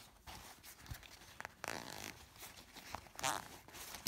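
Zipper on a small black fabric pouch being pulled, in two short zips about a second and a half apart, with light clicks from handling the bag.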